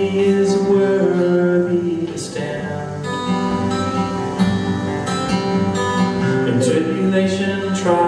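Acoustic guitar strummed in a slow song, with a man's voice singing over it.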